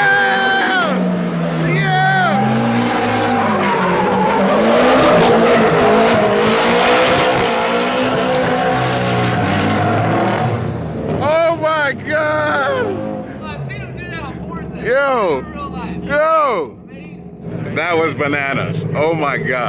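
Nissan S13 drift cars tandem drifting: engines revving hard over a steady screech of sliding tyres for about ten seconds, then the car noise falls away. After that, short excited vocal outbursts come and go.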